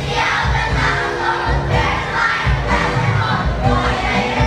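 A large group of children shouting together over a backing track with a steady low beat.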